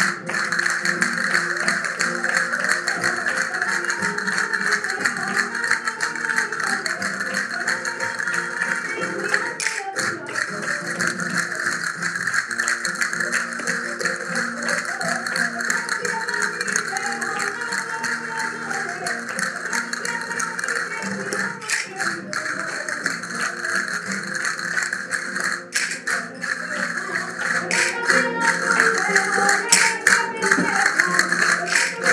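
Live flamenco music: acoustic flamenco guitar playing under dense, rapid clicking from the dancers.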